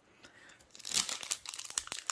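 Foil Yu-Gi-Oh booster pack wrapper being torn open by hand, crinkling in a quick run of crackles that starts about a second in.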